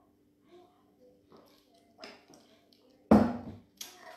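A man drinking a thick green drink from a plastic shaker bottle, with a few soft gulps. About three seconds in comes a sharp knock as the bottle is set down on a wooden table.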